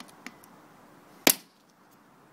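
A single sharp knock of a hard object about a second and a quarter in, with a fainter click shortly after the start.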